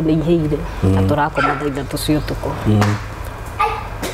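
Speech only: a person talking, with short breaks between phrases.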